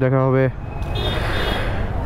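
A man's voice trails off, then steady street traffic noise follows. A faint high beeping tone comes in about a second later.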